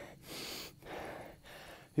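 A man breathing hard, three breaths in a row, out of breath from doing walking lunges uphill.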